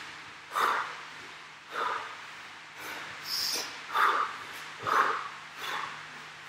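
A man breathing hard from exertion during burpees: short, forceful breaths about once a second, with one sharper, hissing breath near the middle.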